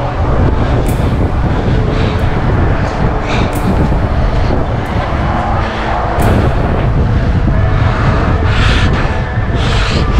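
Loud, unsteady low rumble of wind and handling noise on a body-worn action camera's microphone, with a few sharp knocks as hands grip the wooden ladder and metal railings.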